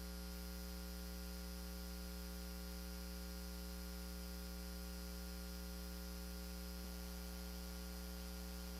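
Steady electrical mains hum with a layer of hiss, unchanging throughout, with no other sound.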